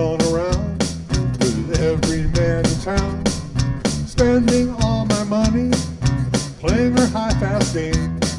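Live blues-rock band playing an instrumental break: acoustic guitar strumming and electric bass on a steady beat of about four strokes a second, under a lead melody that bends in pitch.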